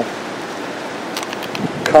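Steady hiss of background noise, with a few faint clicks a little past one second in.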